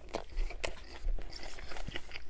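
A person biting into and chewing a breaded chicken sandwich with lettuce and bun, giving irregular crisp crunches.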